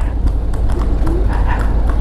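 Horse's hooves clip-clopping on cobblestones as a kalesa is drawn along, over a steady low rumble of the motorcycle and wind.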